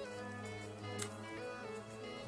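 Quiet background music of held notes that change pitch in steps, with one faint click about halfway.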